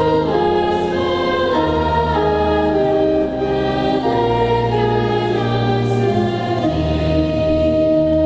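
Youth choir singing a hymn in several voice parts, over held low accompanying notes that change every few seconds.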